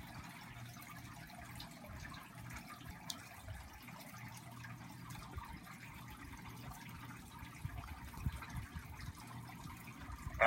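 Faint room tone: a low hum that comes and goes, with scattered light clicks and ticks that grow a little more frequent near the end.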